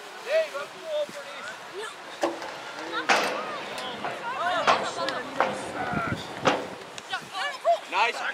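Players and spectators shouting and calling out during rugby play, several voices in short calls, with a few sharp knocks or claps among them, the loudest about three seconds in.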